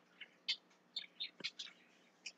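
Faint bird chirps: a handful of short, high chirps spread through the pause.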